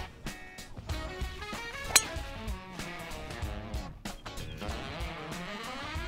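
One sharp crack of a driver striking a teed golf ball on a full-speed swing, about two seconds in, over background guitar music.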